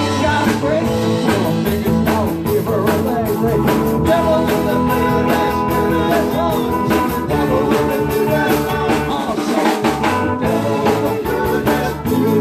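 Live rock band playing a rock-and-roll number on electric guitars, keyboard and drum kit.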